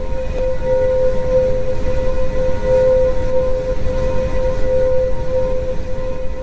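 A steady, unbroken drone presented as the sound of Pluto: one held tone with faint overtones above it, over a low rumbling hiss. This is space-sound audio made by turning recorded vibrations into audible sound.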